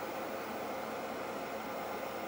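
Steady fan noise from a True North electric space heater running on its lower heat setting.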